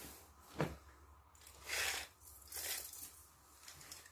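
Soft rustling and swishing of a down sleeping bag's nylon shell being handled and smoothed flat, in a few short strokes. There is one sharp click about half a second in.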